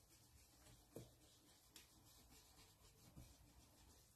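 Near silence, with a few faint soft dabs of a round ink-blending brush pressed onto a stencil over card.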